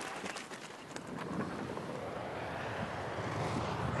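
Downhill racer's skis running over the hard-packed course at about 133 km/h: a rattle of ticks in the first second or so, then a steady hiss that grows louder as he closes on the course-side microphone.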